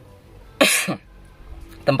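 A person's single short cough, about half a second in.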